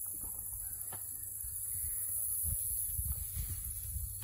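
Outdoor field ambience: an uneven low rumble of wind on the microphone under a steady high hiss of insects in the grass.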